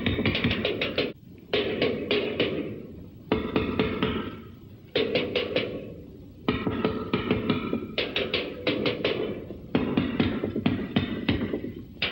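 Drum kit with bass drum and tom-toms played in fast bursts of rapid strokes. Each burst starts with a loud accent and trails off before the next begins, about five times.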